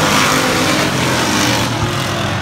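A pack of hobby stock race cars running at speed on the oval, several engines sounding at once, loud and steady.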